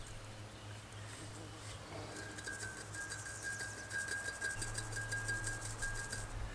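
A small metal sieve on the rim of a glass jar, shaken or tapped to sift crushed oyster-shell powder. From about two seconds in it rattles quickly with fast light ticks over a thin steady ringing tone.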